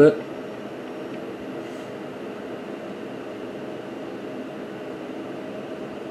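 Steady low hum of running bench equipment, with a few faint steady tones in it and no change in level.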